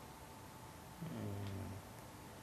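A man's short, low murmur, like a hummed "mm", about halfway through, over faint room tone.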